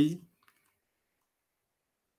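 A man's lecturing voice trails off, then a single faint click sounds about half a second in, followed by dead silence.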